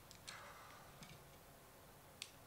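Near silence in a hall, broken by three faint clicks in the first second, the second one the loudest.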